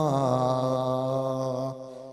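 A man's voice holding one long, level chanted note into a microphone, in the drawn-out intoning style of a Malayalam Islamic sermon, fading out near the end.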